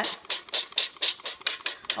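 Evo trigger sprayer bottle misting olive oil onto a perforated parchment liner in an air fryer pan: a rapid series of short hissing sprays, about four a second.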